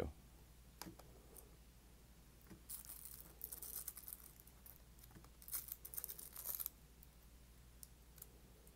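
Faint rustling and crinkling of LP record jackets in plastic outer sleeves being flipped through in a wooden crate: a few light clicks, then two longer swishes, about three and five and a half seconds in.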